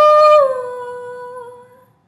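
A woman singing unaccompanied holds a long note, which slides down a step in pitch about half a second in and then fades away.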